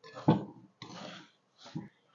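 Two wooden spoons stirring a thick, sticky mix of toasted kataifi and pistachio cream in a ceramic bowl, giving a few short, soft wet sounds.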